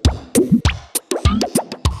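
Sample-based electronic music: a quick, irregular run of short struck notes, many of them sliding up or down in pitch.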